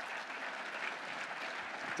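Audience applauding in a large auditorium, a steady, even clatter of many hands clapping.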